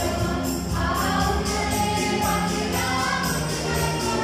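Mixed choir of women's, girls' and men's voices singing a Malayalam Christmas carol through microphones, with instrumental backing that keeps a steady beat.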